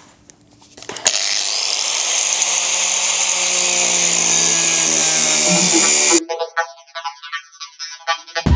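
Small hand-held angle grinder with a cutting disc, cutting into a rusted steel car sill. It starts about a second in and runs steadily with a loud, hissing whine, then gives way to electronic music near the end.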